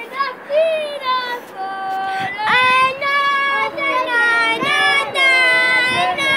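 Children singing in high voices, holding long notes and sliding between pitches, with voices sometimes overlapping.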